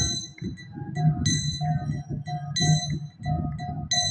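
Karatals (small brass hand cymbals) struck in a steady rhythm, one ringing clash about every 1.3 seconds, in a devotional kirtan. Other instruments play underneath between the sung lines.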